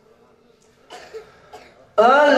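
A person coughing and clearing the throat close to a microphone: a few short coughs starting about a second in, in an otherwise quiet stretch.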